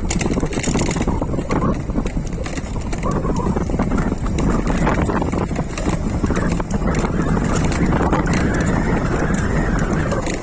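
Wind buffeting the microphone and road noise from a moving e-bike, a steady low rumble broken by many small rattles and knocks.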